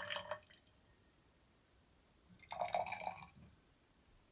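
Liquid pouring and splashing into a glass test tube in two short bursts, the first right at the start and a longer one about two and a half seconds in.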